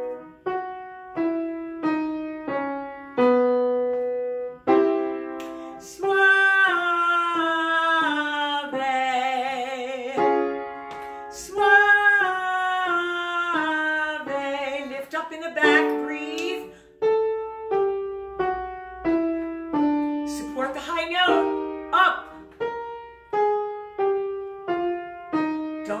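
Upright piano playing a stepping pattern of single notes for a vocal exercise, about two a second. A woman sings two falling scale phrases in full chest voice over it from about six to fifteen seconds in, the first ending with vibrato. Piano notes go on to the end, with short sung notes among them.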